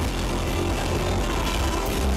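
Live rock band playing loud through a stage PA, with electric guitar and drum kit.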